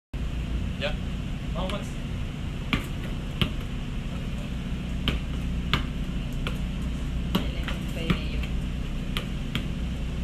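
A series of sharp taps, about one every second, over a steady low hum, with a short 'yeah' from a man about a second in.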